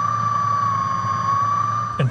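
Underwater ROV's electric thrusters running steadily: one steady whining tone with a low hum beneath it.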